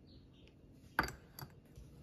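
Stainless-steel mesh tea infuser set down on a ceramic mug lid: a sharp clink about a second in, then a lighter tap.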